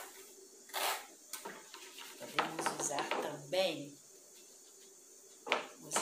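Red plastic tray of cornmeal shifted and shaken on a glass tabletop to smooth away the drawings, with short scraping and knocking sounds. Near the end, hands brushed together to knock off the cornmeal.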